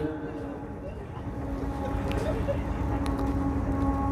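Steady low rumble and hum of an amplified open-air gathering, with a faint held hum tone coming in a little over a second in.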